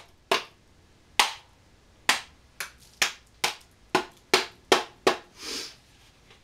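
A rubber mallet tapping on a fiberglass composite mold, about ten sharp taps at irregular intervals that come faster in the second half, to knock the freshly cured composite fuselage loose from the mold. A short, softer rustle follows near the end.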